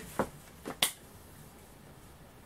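Three short, sharp snap-like hand clicks in quick succession, the last one the loudest.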